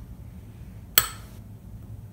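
A metal spoon clinks once against a small glass bowl about a second in, as a spoonful of cornstarch goes in, with a short ring after it; otherwise a low, steady room background.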